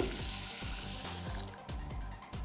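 Hot water poured from a plastic measuring cup onto dry rice in a stainless steel pot, a splashing pour that stops about one and a half seconds in.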